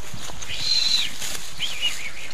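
A small bird calling: a thin, high whistled note held for about half a second, then a shorter wavering chirp near the end, over steady outdoor background noise.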